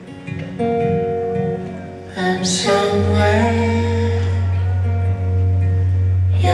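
Live acoustic and electric guitars picking a slow folk passage between sung lines, with a low note entering about halfway and held steady underneath.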